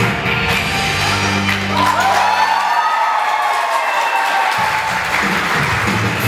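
Acoustic guitar music played through an amplifier. About halfway through, the low bass notes drop out for a couple of seconds while higher gliding notes carry on, and then the bass returns near the end.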